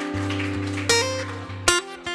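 Acoustic guitar strumming a country tune over a held low note, with sharp strums about a second in and again near the end.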